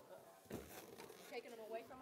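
Faint talk from people in the room, away from the microphone, with a light knock about half a second in.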